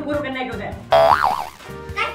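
Background music with a singing voice, cut about a second in by a loud comic 'boing' sound effect whose pitch wobbles up and down.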